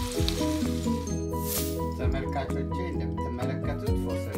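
Carrots and green beans sizzling in a frying pan for about the first second, then background music with sustained, stepping notes. A brief hiss sweeps downward about a second in.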